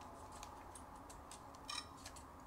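Faint plastic clicks and ticks from the DJI Flip's folding propeller-guard arms being swung open by hand, with a louder click near the end.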